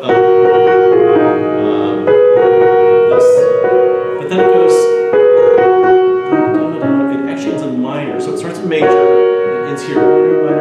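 Slow chords played on a keyboard, each held about a second before the next, showing minor and major harmony.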